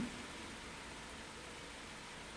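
Faint steady hiss of room tone, with no other distinct sound.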